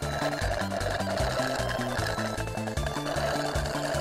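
Cartoon straw-slurping sound effect, a continuous rattly sucking noise, over bouncy game-style background music with a stepping bass line.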